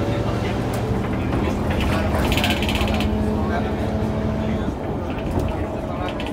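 Inside an Ikarus 435 bus on the move: the diesel engine runs with a steady drone, and the engine note changes about three-quarters of the way through. The body and doors rattle, with a burst of rattling about two seconds in.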